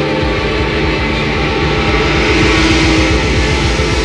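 Live rock band playing a loud instrumental passage: electric guitar over a fast, steady beat in the low end.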